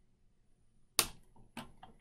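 Near silence, then a single sharp click about a second in, followed by a few faint, short vocal sounds.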